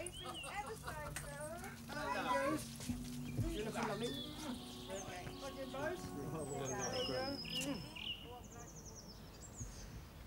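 Indistinct chatter of several people talking and greeting one another, with a few bird chirps and a short high trill in the second half.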